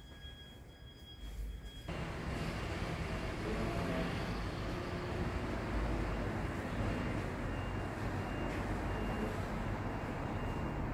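Steady road traffic noise that comes in abruptly about two seconds in and then holds.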